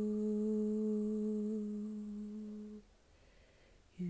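A woman humming one long, steady low note, which stops about three seconds in.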